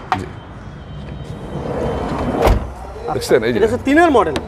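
A van's sliding door rolling along its track and shutting with one loud bang about two and a half seconds in.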